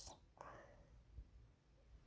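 Near silence: room tone, with two faint clicks, one about half a second in and one past the middle.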